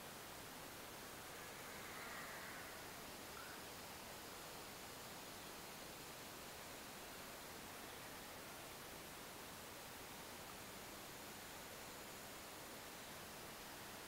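Faint steady hiss, close to silence, with a faint, slightly louder patch about two seconds in.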